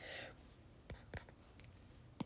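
Faint taps and light scratches of a stylus writing on a tablet screen as a plus sign is drawn, after a brief soft hiss at the start.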